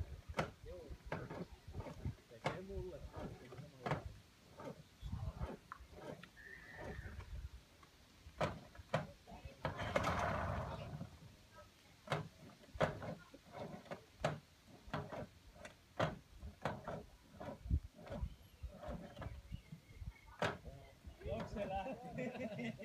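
Faint talk from people sitting in a small boat, broken by many irregular knocks and bumps. About ten seconds in there is a short rasping noise about a second long.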